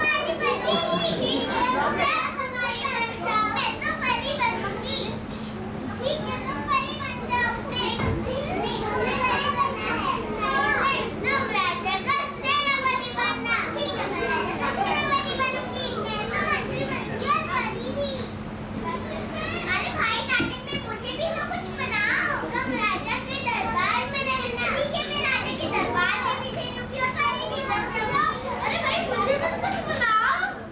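Many children's voices chattering and calling over one another throughout, with a steady low hum underneath.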